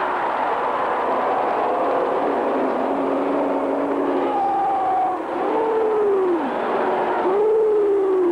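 Stadium crowd din, with a few long sliding tones on top that rise and then fall away, near the middle and again near the end.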